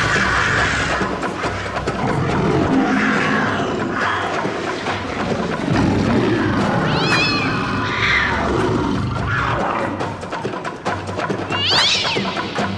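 Music with two cat yowls laid over it, one about seven seconds in and one near the end.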